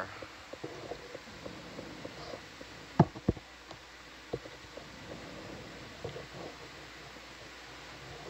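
Steady low background hiss with two sharp clicks close together about three seconds in, and a few fainter ticks scattered through.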